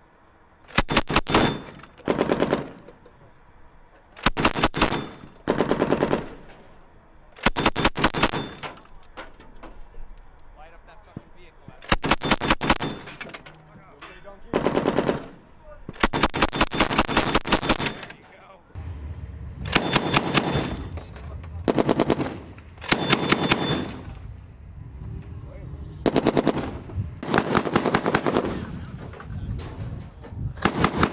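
Mk 19 40 mm belt-fed automatic grenade launcher firing short bursts of rapid shots, about one burst every two seconds with brief pauses between, some bursts louder than others.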